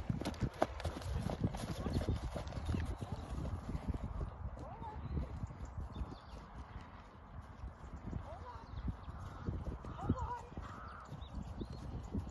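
A horse's hooves drumming on grass turf at a canter, loudest in the first few seconds as the horse passes close, then fainter as it moves away.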